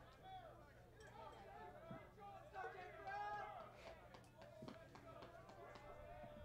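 Faint, distant voices at a baseball field: players and spectators calling out and chattering between pitches, over a low steady hum.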